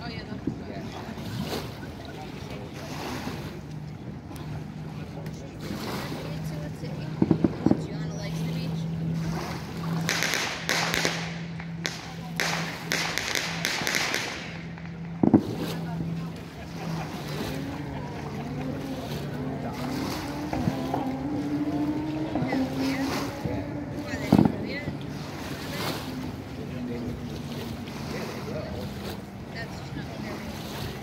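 A motorboat engine humming steadily out on the water, its pitch gliding up and down in the second half, with water washing against the shore. A few sharp distant firework bangs cut through, the loudest about fifteen seconds in and another near twenty-four seconds.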